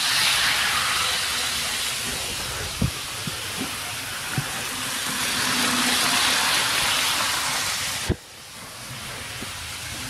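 HO scale model train at full throttle: the locomotive's motor and the wheels on the track give a steady hiss and whir that swells as the train passes, with a few light clicks from the rail joints. The sound drops suddenly about eight seconds in.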